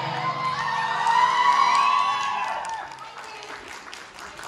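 The end of a live folk song: a long, high vocal note rises and then falls away over a steady held drone, with the percussion already stopped. About three seconds in it fades and audience applause and cheering take over.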